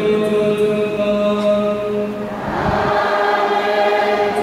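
Church choir singing a slow sacred piece in long, held chords, with a change of chord about halfway through.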